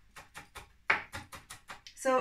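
Kitchen knife chopping leaves on a wooden cutting board: a quick run of short knocks, about six a second, with one louder strike about halfway.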